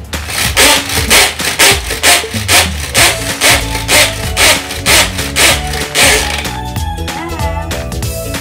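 Pull-cord manual food chopper whirring in quick repeated pulls, about two a second, its spinning blades chopping cauliflower into rice-sized bits; the pulling stops about six seconds in. Background music plays throughout.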